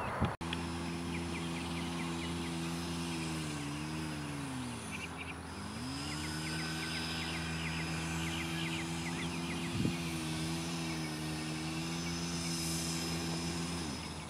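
An engine running steadily, its pitch dipping and then recovering about four to five seconds in. A single sharp click sounds about ten seconds in.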